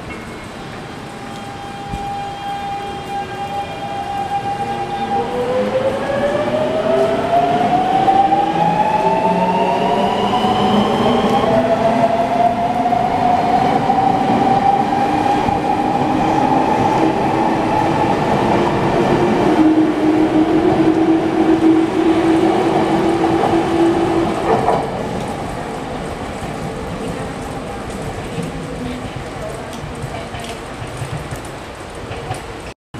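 Nankai electric train pulling out and accelerating past. A steady motor tone in the first seconds gives way to a whine that rises in pitch for several seconds, the inverter-controlled traction motors speeding up. Loud running noise follows and fades away after about 25 seconds as the train leaves.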